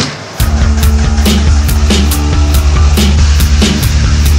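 Background music with a heavy bass line and a steady beat, coming in loud about half a second in.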